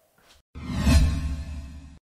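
A video-editing whoosh sound effect over a deep bass rumble, starting suddenly about half a second in and fading away, for a title-card transition.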